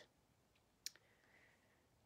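Near silence: room tone, broken by one brief, faint click a little before one second in.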